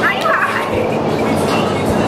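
Women's excited high-pitched squeals and laughter at a surprise, with a wavering shriek in the first half-second, over a steady low hum.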